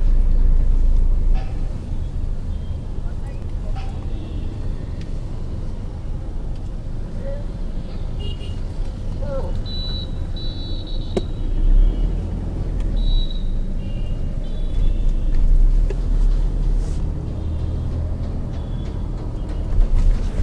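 Steady low rumble of a car moving through city traffic, heard from inside the car, with a series of short, high-pitched horn toots at different pitches in the middle.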